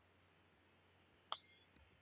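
Near silence broken by a single sharp computer mouse click just past the middle, advancing the slide, followed by a much fainter click.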